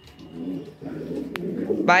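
Domestic pigeons cooing: low, warbling coos repeated one after another. A single sharp click comes a little past halfway, and a man's voice starts at the very end.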